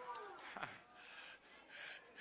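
A quiet pause in a preached sermon: faint room sound, then a short intake of breath near the end.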